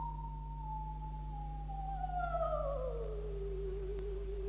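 Operatic soprano voice singing softly on a nearly pure, sustained high note that slides slowly downward over about three seconds and settles on a lower held note.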